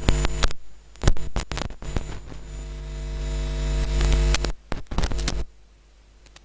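Loud electrical hum and buzz with crackling clicks, cutting in and out: it swells to its loudest about four seconds in, breaks off, returns briefly and stops about half a second before the end.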